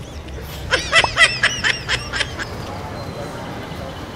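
A rapid run of high-pitched, honking, laugh-like calls, about six a second for a second and a half, of the kind added as a comic sound effect.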